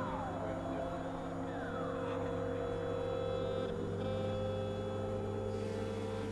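Experimental electronic synthesizer drone: several steady sustained tones layered together, with a falling pitch sweep at the start and another about two seconds in.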